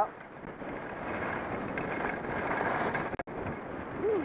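Steady rushing noise of wind over a helmet-mounted camera and skis sliding on groomed snow during a downhill run, building a little over the first couple of seconds, with a brief dropout after about three seconds.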